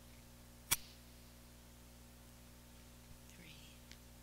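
A single sharp click about a second in, over a low steady hum, with a faint breath and a small tick near the end.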